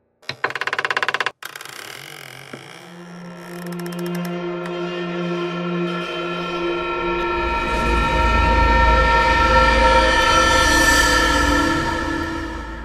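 A heavy wooden door creaks open, a rapid run of clicks lasting about a second. It is followed by a suspense-music drone of held tones that swells steadily with a deep rumble building underneath, loudest near the end.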